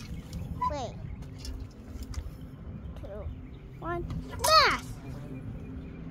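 A child's short, high-pitched vocal exclamations, three of them, falling in pitch, the loudest a little past the middle, over a steady low background rumble.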